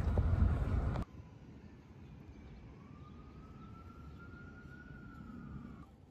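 A loud low rumble on the microphone for about a second, then quieter street ambience with a faint distant siren wailing in one long, slowly rising tone.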